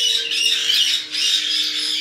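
Caique parrots squawking in loud, high, overlapping calls.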